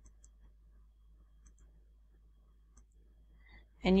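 Faint computer mouse clicks placing nodes in embroidery digitizing software. They come in quick pairs, about every second and a half, over a low room hum. A voice starts right at the end.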